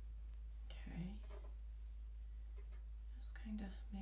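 A woman speaking softly under her breath, in two short bursts, about a second in and near the end, over a steady low hum.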